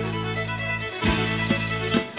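Country music with a fiddle playing its instrumental break over a band. Sustained low notes give way about a second in to sharp accented band hits about half a second apart.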